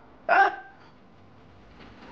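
A single short voiced exclamation, like a brief "ha", a little under half a second in, then quiet room tone.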